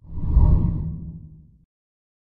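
A deep whoosh sound effect for an animated logo. It swells up within half a second, then fades away over about a second.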